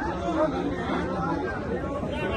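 Chatter of a seated outdoor crowd, many voices talking over one another with no single clear speaker.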